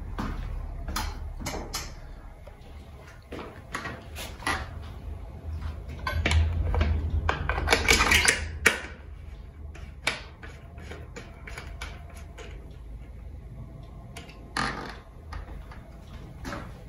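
Scattered clicks and knocks of a bicycle front wheel being handled and fitted into the fork dropouts, with a louder, noisier stretch of handling in the middle.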